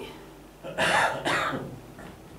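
A person's short breathy vocal sound, two quick pulses about a second in.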